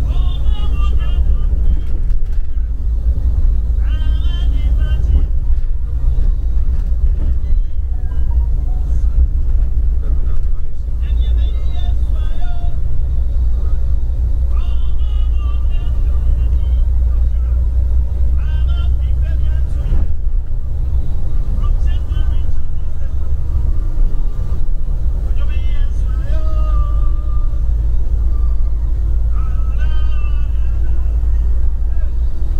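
Moving bus heard from inside the cabin: a steady low drone of engine and road rumble, with voices coming and going over it.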